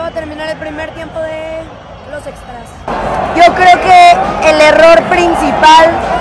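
A woman talking in Spanish close to the microphone. For the first three seconds her voice is quieter over a stadium crowd background; then it jumps suddenly to louder, clearer speech.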